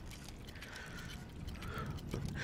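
Faint mechanical clicking and whirring like clockwork gears: a sound effect of an automaton's moving parts.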